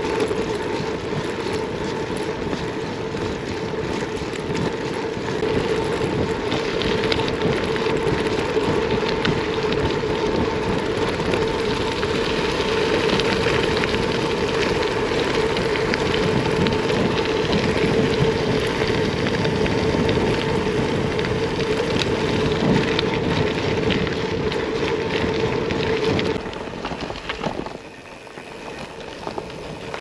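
Gravel bike tyres rolling over a loose gravel track, a steady crunching rattle with wind on the microphone and a steady hum running underneath. It quietens about four seconds before the end.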